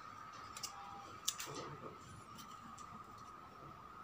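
Scissors and an orchid's flower stalk being handled: a few faint clicks, the sharpest about a second in, over a faint steady tone.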